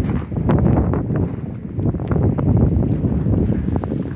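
Strong wind buffeting the phone's microphone: a loud, uneven low rumble.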